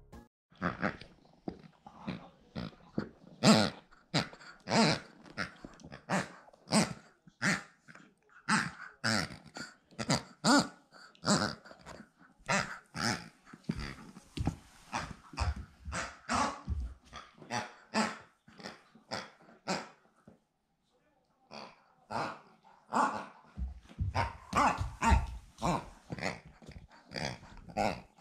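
A German shepherd puppy chewing a squeaky toy: a long run of short squeaks, one or two a second, with a short pause about two-thirds of the way through.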